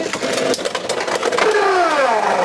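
Two Beyblade X tops, Leon Claw and a Shark 4-60 Low Flat, spinning and clattering against each other and the stadium floor just after launch, a continuous rattling whir. About one and a half seconds in, a whining tone slides down in pitch.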